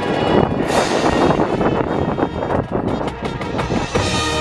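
Marching band playing: brass chords over drums and mallet percussion, with many sharp drum hits. A loud brass chord swells in just under a second in.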